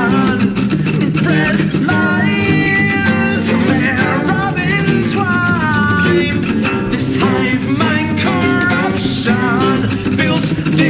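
Acoustic guitars playing a fast, dense passage in a flamenco-tinged acoustic metal style, with rapid plucked and strummed notes layered in harmony.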